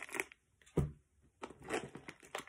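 Plastic-wrapped first-aid packages crinkling and rustling as they are handled, in short irregular bursts with a sharp click at the start and a dull bump a little under a second in.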